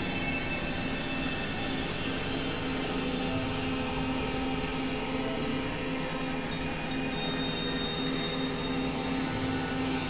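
Experimental synthesizer drone and noise: a dense, steady wash of hiss with a sustained low hum-like tone and several faint held tones above it, with no beat or rhythm.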